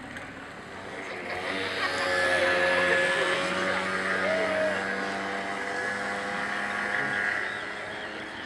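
Motorboat engine running with a steady hum, growing louder over the first two seconds and then slowly easing off, with a brief rise in pitch about four and a half seconds in.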